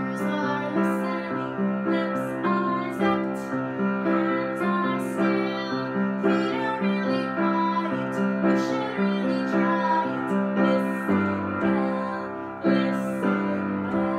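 Acoustic upright piano playing a simple, steady sing-along accompaniment in repeated chords, with a woman's voice singing along.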